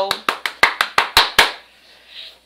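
Quick burst of excited hand clapping, about ten claps in a second and a half, then stopping.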